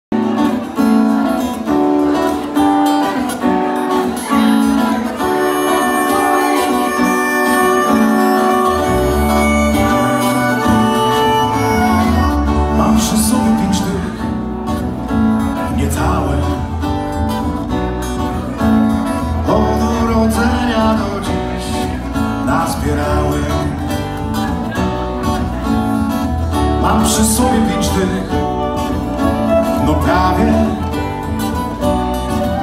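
Live acoustic folk band playing an instrumental intro: acoustic guitar and fiddle, with a low bass line coming in about nine seconds in.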